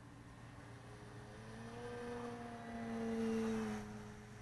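Electric motor and propeller of a Skywing 55-inch PP Edge 3D RC plane whining in flight. The tone rises in pitch and grows louder, is loudest about three seconds in, then drops away sharply just before the end.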